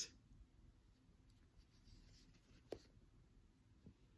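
Near silence with the faint scratch and rustle of a needle and thread being worked through a small fabric card holder by hand, and one soft tick near the end.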